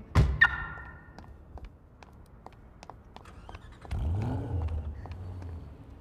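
A car door shuts with a heavy thud near the start. About four seconds in, the Bentley coupe's engine starts: a brief rise and fall in revs, then a steady low idle.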